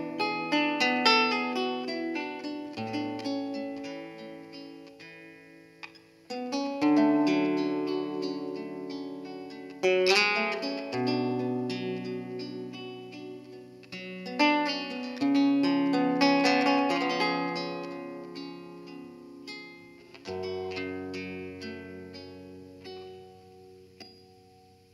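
Recorded music, a plucked guitar introduction, played back through a pair of Altec 902-8A compression drivers with no horns fitted. Phrases of plucked notes ring out and fade, and a fresh phrase strikes about every four to six seconds.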